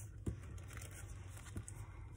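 Faint handling of plastic-bagged paper embellishments and washi tape on a tabletop, with light rustling and two soft knocks, about a quarter second and a second and a half in.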